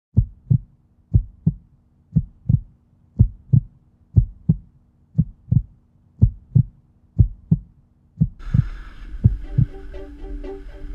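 Heartbeat sound effect: pairs of low thumps, lub-dub, about once a second. Music comes in near the end.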